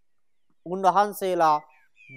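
A monk's voice in a sermon: a short pause, then one spoken phrase about a second long.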